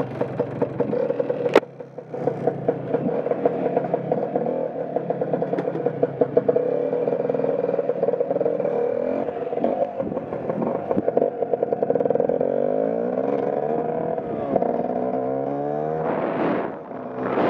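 Scooter engine idling unevenly with irregular pops, a sharp clunk about a second and a half in, then the scooter pulling away with the engine revving up and down as it gathers speed.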